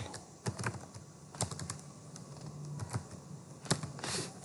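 Computer keyboard typing: slow, irregular keystrokes with gaps between them, including a short cluster about one and a half seconds in.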